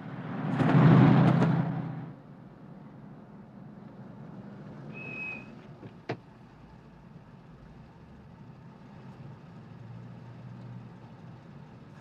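A loud whoosh swells and fades in the first two seconds. After it, a car engine hums low and steady, with a short high squeak about five seconds in and a single sharp click about a second later.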